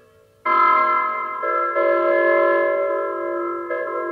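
Early electronic music: after a fading tone, a chord of many steady, pure electronic tones enters abruptly about half a second in and is held. Its lower notes shift a few times while the upper tones stay put.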